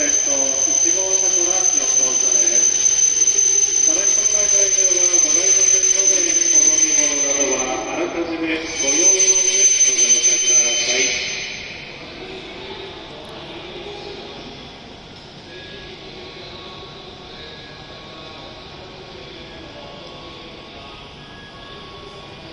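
E7 series Shinkansen train pulling slowly into the platform, with a wavering squeal and a steady high whine that stop about eleven seconds in as the train halts. After that, a quieter steady hum from the standing train.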